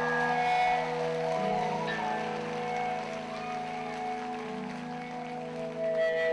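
Amplified electric guitar and bass holding long sustained notes that ring out, with no drum beat, as the song winds down; faint applause from the hall.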